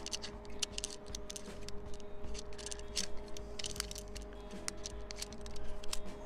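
Scattered small clicks and ticks from the carbon fiber centre column of an Ulanzi Zero Y tripod being handled and separated from its clamp by hand, over a faint steady hum.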